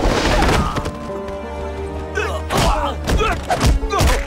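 Fight-scene thuds of punches and body blows: a burst of hits in the first second, then three more sharp blows in the second half, over background music with sustained notes.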